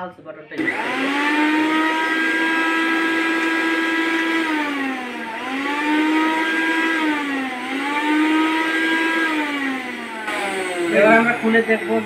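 Philips 750-watt mixer grinder's motor grinding ginger in its steel jar: it spins up, dips in pitch twice and recovers, then winds down and stops near the end.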